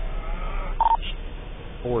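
A single short electronic beep just before the one-second mark, a steady tone over faint background voices.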